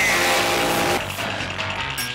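A hidden, hard-to-place sound from an industrial rock recording: a loud hissing noise with steady pitched tones in it, sounding on the tonic and flat seven of the key. It is loudest for about the first second, then goes on more quietly.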